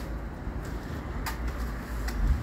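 Steady low background rumble with a faint haze of noise, broken by a couple of faint clicks.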